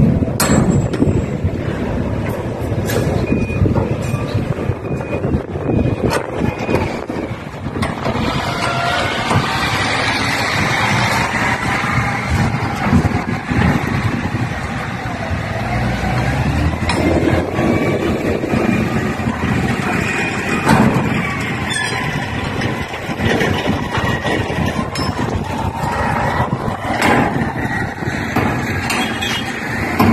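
Heavy vehicle engines running in a steady low rumble, with scattered metal clanks and knocks and a short high beep a few seconds in.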